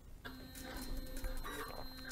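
Grundfos Smart Digital DDA dosing pump starting and running: its stepper motor drives the diaphragm with a quiet whine of several steady tones, starting about a quarter second in.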